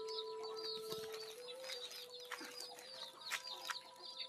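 Faint chickens clucking, with high chirping and a faint steady hum beneath, and a few light clicks.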